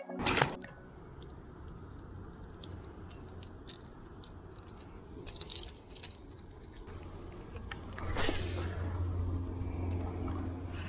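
Close handling noise of fishing gear: a sharp knock just after the start, then scattered small clicks and rattles over a steady low rumble, and a louder rustle about eight seconds in.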